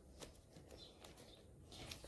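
Near silence: quiet room tone with a few faint, brief handling noises as the planner is set against the bag.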